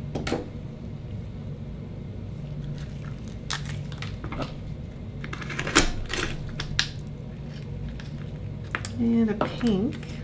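An oyster knife working into a saltwater akoya oyster and prying its shell open on a wooden cutting board: a scatter of sharp clicks and knocks of blade on shell, the loudest a little before the middle.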